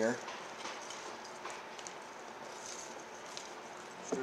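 Faint, scattered light clicks and rustles of small crimp-on wiring terminals and parts being handled, over a steady low room hiss.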